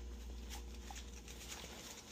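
Faint licking and chewing of a dog eating sandwich scraps off a paper wrapper held out to it.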